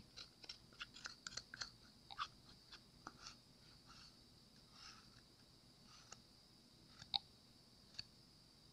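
Faint small clicks and scrapes of a stir stick scraping resin-coated flakes out of a cup: quick and frequent for the first few seconds, then sparse, with one sharper tick near the end.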